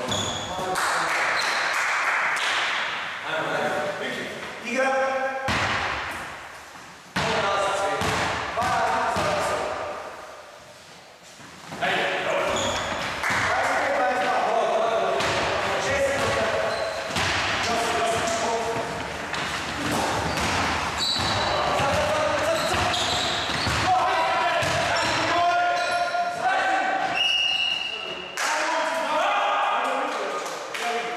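A basketball game on a wooden gym floor: the ball bouncing and thudding repeatedly, mixed with players' voices calling out across the hall.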